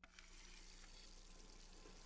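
Near silence: a faint hiss with a low steady hum.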